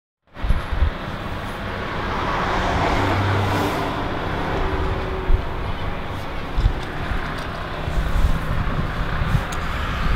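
Street traffic noise from passing cars, a steady wash that swells as a vehicle goes by about two to four seconds in.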